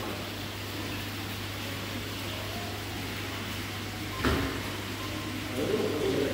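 Steady low mechanical hum with a hiss of running equipment, broken by a single sharp knock about four seconds in, with a voice briefly near the end.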